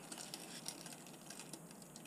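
Faint handling noise: scattered light clicks and taps as a plastic planer board fitted with tire weights is turned over in the hands.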